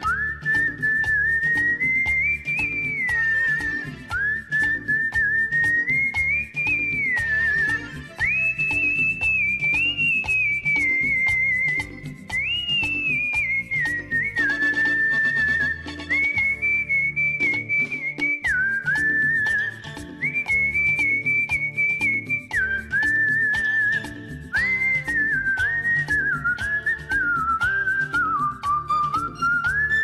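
A person whistling the melody of a Hindi film song in phrases, one clear tone that slides between notes and breaks into quick warbles, over a backing music track with a steady beat.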